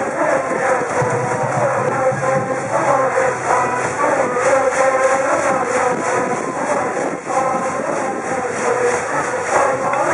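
High school brass band playing a baseball cheer song over a steady beat, with a large student cheering section singing and chanting along.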